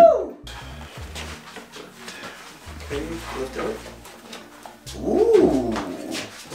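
Faint knocks and shuffling as a large plywood shelf unit is handled and carried, then a short wordless voice sound that rises and falls in pitch near the end.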